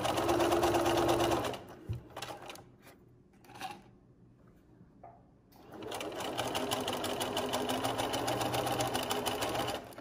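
Bernina sewing machine stitching a straight seam in a fast, even run of needle strokes. It stops after about a second and a half, then starts again about halfway through and runs until just before the end.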